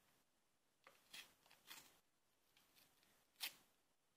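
Faint rips and rustles of a paper playing card being torn open by hand: a few short tearing sounds about a second in and a sharper one near the end.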